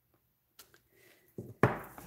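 A few sharp knocks about a second and a half in, the loudest with a dull thud, as a clear acrylic stamp block is lifted off the stamped cardstock and set down on the wooden desk. A faint tick comes a little earlier.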